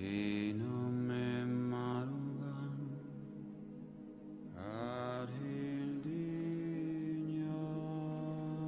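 A lone low male voice sings slow, long-held notes in a chant-like melody, sliding into a new note about half a second in and again about five seconds in.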